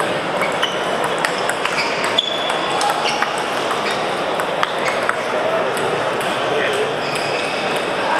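Celluloid-type table tennis balls clicking off bats and tables in a rally, short sharp ticks at irregular spacing, some with a brief ringing ping, and more ball clicks from neighbouring tables. Under them runs a steady babble of voices in a large echoing sports hall.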